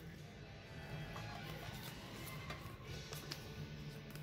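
Faint background music, with a few light clicks and rustles of a trading card being slid into a plastic card sleeve.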